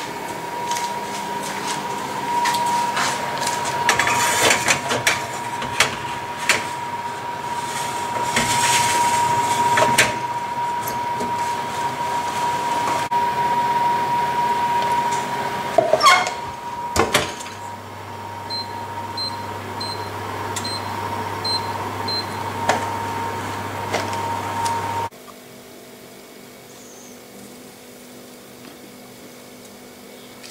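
Oven being loaded with a metal baking tray: several knocks and clatters of the tray against the oven racks, the loudest pair about two-thirds of the way through, then five short electronic beeps from the oven controls and a low hum, over a steady whine that stops abruptly near the end.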